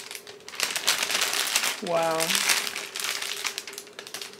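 Clear plastic bouquet wrapping crinkling and crackling as the wrapped flowers are handled and turned, in quick irregular crackles, with a short spoken "Wow" about halfway through.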